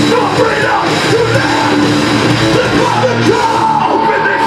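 A hardcore punk band playing live and loud, with shouted vocals over distorted electric guitars and drums.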